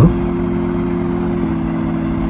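A steady low hum made of several held tones, with no speech over it.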